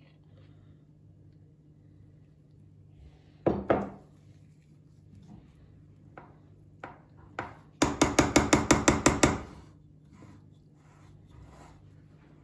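A metal spoon knocking while chocolate spread is spread over cookie dough in a baking pan: two knocks about three and a half seconds in, then a quick run of about a dozen sharp taps lasting about a second and a half.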